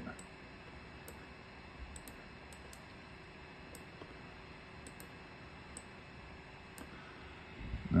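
Scattered, faint, irregular clicks of a computer mouse over a low background hiss.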